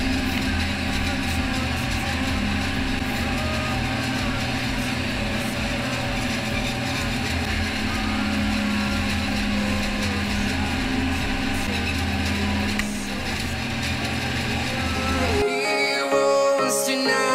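A harvesting machine's engine and maize header running steadily while cutting standing maize: a low drone with an even throb about twice a second.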